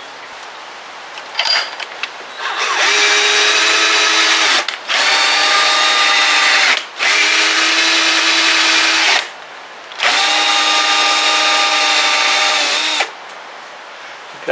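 Cordless drill spinning a thread tap through a nylon-insert lock nut held in a vise. It runs four times with short pauses between, the tap driven in and back out to ease the nylon insert, which is too tight. Each run has a steady motor whine that drops slightly in pitch as it stops, and a couple of light clicks come before the first run.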